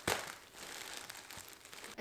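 Plastic packaging crinkling and rustling as a soft package is handled and opened, with a sharp crackle at the start.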